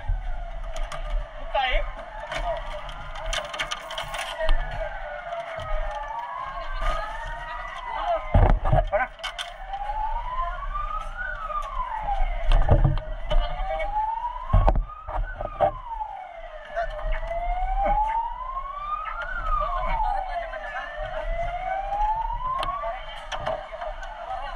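Several fire-response vehicle sirens wailing at once, their rising and falling tones overlapping. In the second half one siren dominates, slowly climbing and falling about every four seconds. A few sharp knocks cut in around the middle.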